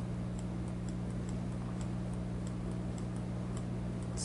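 Steady low electrical hum with faint, fairly regular ticks, about two a second.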